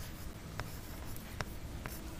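A stylus writing on a pen tablet: faint scratching with three light taps, at about half a second, a second and a half, and near the end, over a low steady hum.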